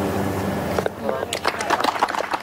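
A drawn-out groan of several onlookers' voices, then a short patter of hand clapping from about a second in.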